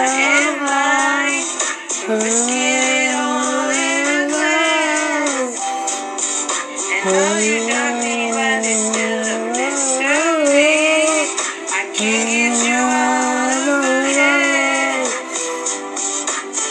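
A song with a sung vocal melody over backing music. It is thin-sounding, with no bass.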